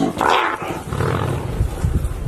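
A leopard and a brown hyena fighting: a short, rough animal call in the first half-second, then low wind rumble on the microphone.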